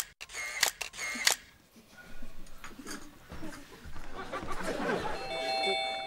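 Several quick camera shutter clicks in the first second and a half, as from a photo booth taking its pictures. A steady ringing tone sounds near the end.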